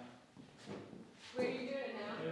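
A person's voice talking, which breaks off into a short lull and starts again about a second and a half in.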